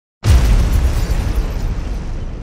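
Cinematic explosion boom sound effect for an intro title: it hits suddenly a fraction of a second in with a deep rumble, then slowly dies away.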